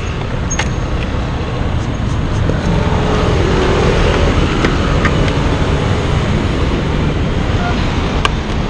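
Steady rumble of road traffic and engine noise at a city curbside, with a few faint clicks.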